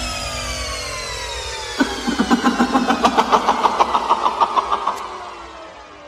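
Closing section of an electronic dubstep track: sustained tones glide steadily downward in pitch. From about two seconds in, a rapid engine-like rattling pulse of roughly seven beats a second joins them, stops near the five-second mark, and the sound then fades away.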